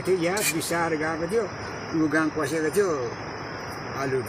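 An elderly man speaking in short phrases, with pauses between them.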